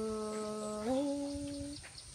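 A woman's unaccompanied voice holding one long note in Thái khắp folk singing. The note sinks slightly, steps up in pitch about a second in, and fades out near the end.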